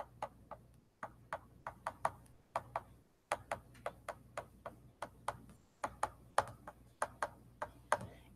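A pen stylus tapping and clicking on a tablet screen during handwriting: faint, irregular clicks about three or four a second, with brief pauses.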